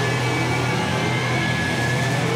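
Live rock band holding a loud, steady distorted chord on electric guitars and bass, with a thin high tone held above it.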